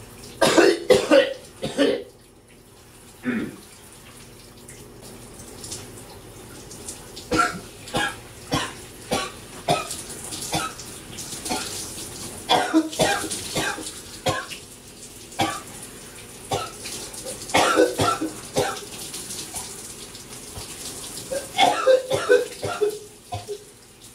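Man coughing in repeated fits from a throat bug that won't let up: bursts of short coughs in quick runs with pauses between, over the steady hiss of running shower water.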